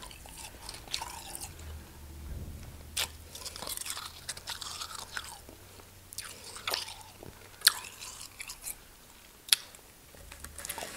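Close-miked chewing of mouthfuls of packed real snow from snowballs: short, crisp crunches in clusters every second or so, with a few sharper, louder crunches near the end.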